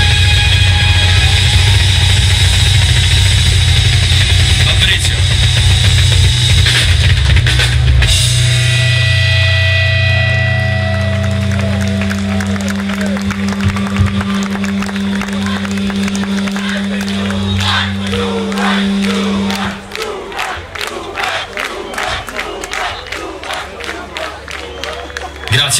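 Nu-metal band playing loud with drums and distorted guitars, then ending the song on held notes that ring out for about ten seconds and die away. From about twenty seconds in, the crowd claps and cheers.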